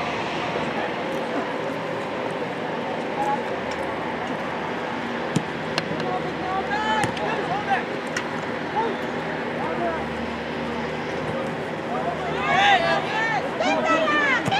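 Distant shouts of soccer players calling across the field over a steady outdoor background with a low hum, a few short sharp knocks in the middle, and a cluster of several overlapping shouts near the end.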